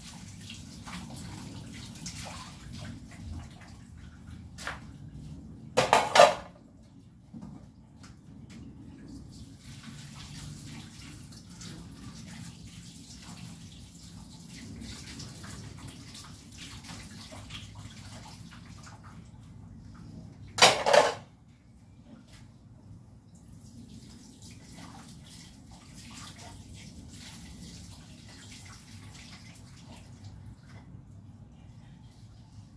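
Dishes being washed by hand at a sink: water running, with small clinks and knocks of plates and cutlery. Two short, loud clanks, one about six seconds in and one around twenty-one seconds in, stand out from the rest.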